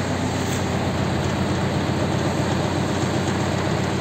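Mitsubishi MT-21D mini tractor's four-cylinder diesel running steadily, driving its rear rotary tiller. The tiller turns smoothly, without knocks or jerks.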